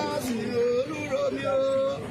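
Singing voices holding long, steady notes that step from one pitch to the next.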